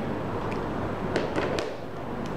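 A few short, light clicks of a plastic charging adapter and USB cable connector being handled and unplugged, over a steady hiss.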